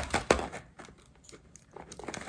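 Plastic candy-kit mold knocked and handled on a tray as the molded buns are tapped out: two sharp knocks at the start, then light clicks and rustles of plastic.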